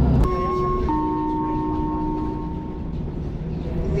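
Two-note falling chime from a city bus's passenger-announcement system, the signal before a next-stop announcement: a short higher note, then a lower note held about two seconds. A steady low rumble of the bus's interior running noise lies beneath it.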